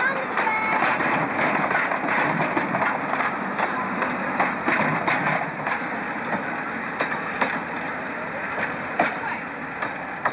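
Passenger carriages of a steam-hauled train rolling past, their wheels clicking irregularly over the rail joints. The rumble slowly fades toward the end.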